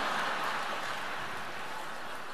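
Large theatre audience applauding, a steady dense clatter that eases slightly toward the end.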